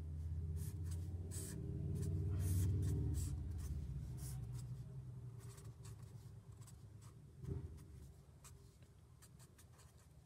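Sharpie marker drawing on paper: a run of short, quick pen strokes as lines, arrows and labels are drawn. A low hum sits under it in the first few seconds, and there is a single soft knock about seven and a half seconds in.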